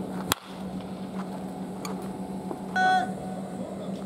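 A wooden bat cracks against a baseball once, sharply, just after the start, over a steady low hum. Fainter knocks follow, and a brief high-pitched call sounds about three seconds in.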